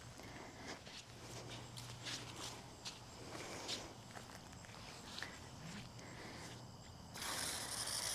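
Faint footsteps and light handling rustles, then about seven seconds in a garden hose spray nozzle starts, a steady spray of water falling onto the mulch around a newly planted shrub.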